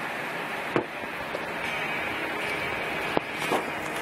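Steady background hiss with two short, sharp clicks, one about a second in and one after three seconds, as small injector parts are handled on a towel.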